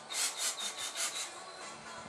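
A quick run of about six rough scraping strokes, some five a second, in the first second or so, then they stop.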